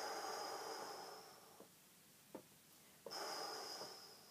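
A woman breathing deeply and audibly during a Pilates exercise: two long breaths, the first at the start and the second about three seconds in, each carrying a thin whistle.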